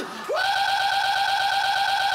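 A single high-pitched note held steady for about two seconds, starting a moment in: a voice stretched and pitched up by editing.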